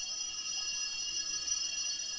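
Altar bells ringing without a break at the elevation of the chalice after the consecration: a bright, high-pitched ringing that holds steady.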